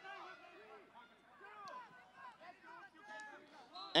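Faint, distant voices of players and people along the sideline calling out across an open sports pitch, several voices overlapping at low level.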